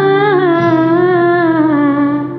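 A woman's voice singing one long, wavering, wordless note that drifts slowly downward, over a karaoke backing track with held accompaniment tones.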